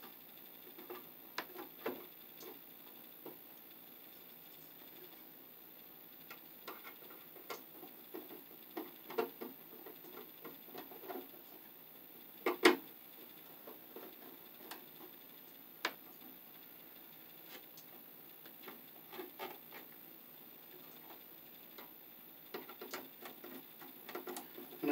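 Light scratches and small clicks from wire being fitted under a terminal screw in an old fuse box, scattered throughout, with a sharper click about halfway and another a few seconds later.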